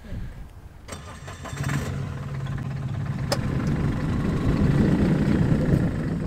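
Ligier microcar's engine starting about a second in, then running with a steady low hum that grows louder as the car moves off. A single sharp click sounds about halfway through.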